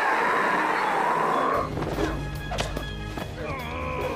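A loud cry with a wavering pitch for about a second and a half, cut off suddenly by film score music with a steady low bass.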